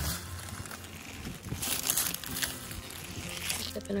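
Swiss chard leaves rustling and crinkling in a few brief bursts as they are handled.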